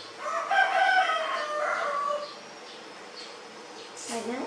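One loud, drawn-out crowing bird call, lasting about two seconds.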